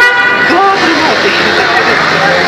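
A brief horn toot, one held note lasting about half a second at the start, over people talking.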